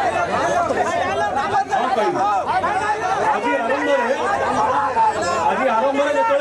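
Speech: several voices talking over one another, with no clear single speaker.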